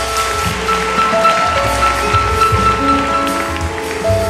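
Acoustic jazz group playing live: grand piano notes over upright bass, with cymbals from a drum kit.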